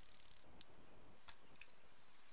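Quiet workbench handling of a plastic paint mixing cup: faint small ticks and one short, sharp click about a second and a quarter in.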